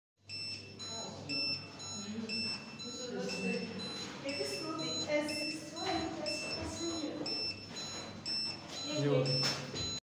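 Medical gas alarm panel beeping: a short, high electronic beep repeating at an even pace. It is the warning that the oxygen supply pressure is low.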